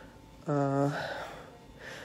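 A woman's short voiced sound about half a second in, held on one pitch, trailing off into a breathy out-breath.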